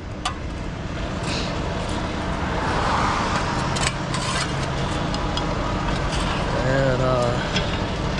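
Steady engine and road noise from a truck beside the manhole, building over the first few seconds and then holding. A few sharp metal clanks come as a steel hook and shovel work at the manhole lid.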